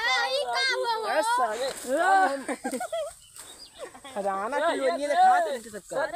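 Boys' voices talking and calling out excitedly, with a short lull about halfway through.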